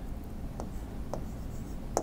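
Light taps of a stylus writing on a tablet screen: two faint ticks about half a second apart over a low steady hum.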